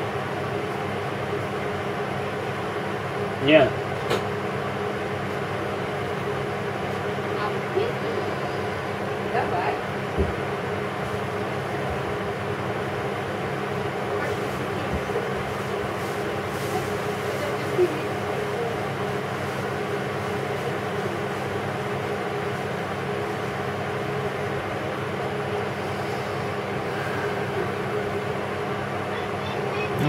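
Steady kitchen background noise: a constant hum with a few brief faint sounds over it, the clearest about three and a half seconds in.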